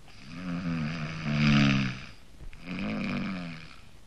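A man snoring heavily in his sleep: two long, rasping snores, the first longer and louder than the second.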